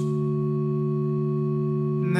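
A steady held chord from the instrumental accompaniment of a chanted hymn, with no singing, in the pause between stanzas.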